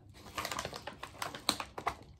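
A white paper mailer envelope being torn open by hand: a run of sharp, irregular paper crackles and rips, the loudest about halfway through and near the end.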